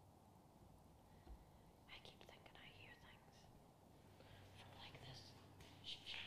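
Very faint whispering, starting about two seconds in and running on in short phrases, over near silence.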